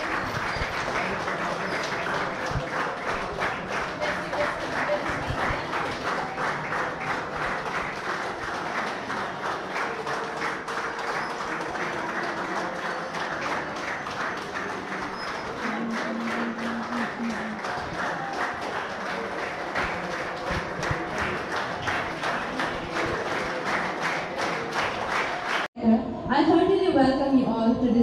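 An audience clapping steadily and in time for a long stretch, with a few voices underneath; it cuts off suddenly near the end.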